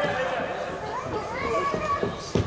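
Young footballers' voices calling out on the pitch, echoing in a large indoor sports hall, with a longer rising call in the second half.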